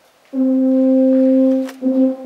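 Tuba and euphonium ensemble playing one long held note after a brief rest. The note stops just before the end, and short repeated notes on the same pitch begin.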